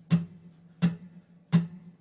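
Three short down strums on a steel-string acoustic guitar, evenly spaced a little under a second apart, each dying away quickly: down strums placed on the beat of a song.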